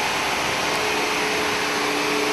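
Vacuum cleaner running steadily: an even rush of air with a constant motor hum.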